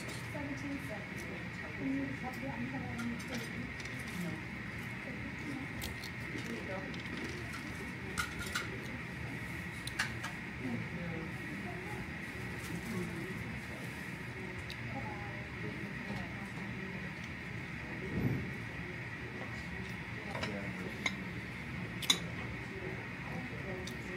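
Quiet room tone with a steady faint high hum and a low murmur of background voices, broken by occasional light clicks and clinks of a spoon and dishes.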